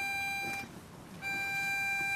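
Instrumental music: one long held note that breaks off about half a second in and returns on the same pitch a little past the middle.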